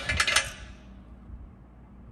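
A few light clicks and taps of hard plastic as a small hose fitting is handled in the first half second, then only a low hum of room tone.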